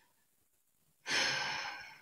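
Silence for about a second, then a man's long, audible breath through the mouth, loudest at its start and fading away, taken just before he speaks again.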